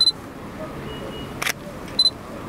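A digital camera's short high autofocus-confirmation beep, a single shutter click about a second and a half later, then another beep at the end.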